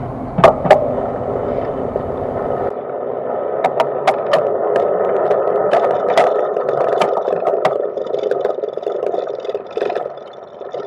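Cargo bike wheels rolling over grooved concrete and paving. The rough rolling noise is carried straight through a camera case hard-mounted to the frame. There are two sharp knocks about half a second in, and a run of clicks and knocks from about three and a half to eight seconds, as the wheel goes over the rough surface.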